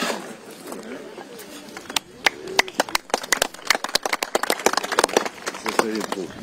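Sharp, irregular clicks, several a second, growing dense from about two seconds in, over a background of murmuring voices.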